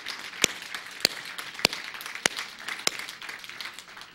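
Congregation applauding: a haze of scattered clapping with a few loud claps standing out at a steady pace, about one every 0.6 seconds, easing off slightly toward the end.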